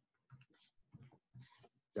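A man's faint breathing and soft mouth sounds, a handful of short quiet puffs and murmurs, while he pauses mid-sentence.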